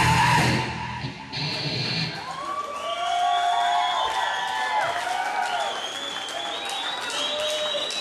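Live heavy metal band ending a song with a final full-band hit about a second in, then a small audience cheering and whooping, with some clapping.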